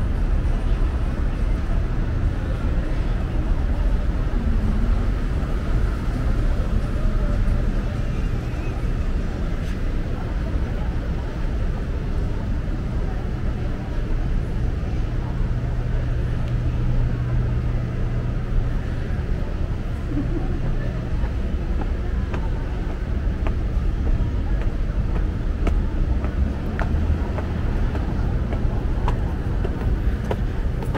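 City street ambience: a steady rumble of road traffic, with a low hum that swells in the middle for several seconds.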